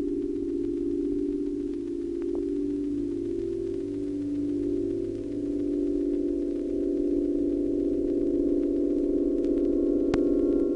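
Sustained electronic drone of several steady, pure tones clustered close together, beating slowly against one another. A higher tone joins about two and a half seconds in.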